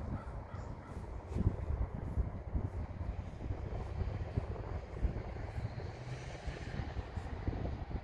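Low rumbling wind on the microphone, with a crow cawing faintly in the background.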